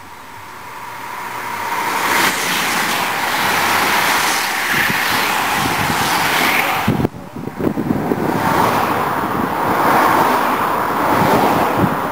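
A bunch of racing bicycles passing close at speed on a descent: a rush of tyres on tarmac that builds over the first two seconds and breaks off abruptly about seven seconds in. Then cars pass loudly until just before the end.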